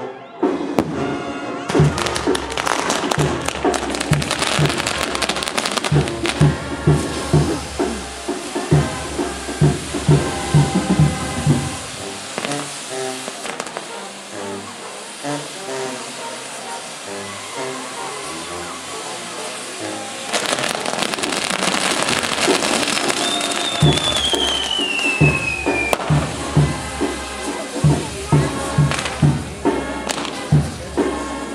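Castillo fireworks burning: a continuous hiss and crackle of spinning fire wheels and lance-work, mixed with music that has a steady low beat. A single falling whistle sounds in the second half.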